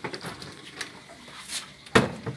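Under-counter refrigerator door being pulled open by hand: faint handling and rustling, then one sharp, loud click just before the end.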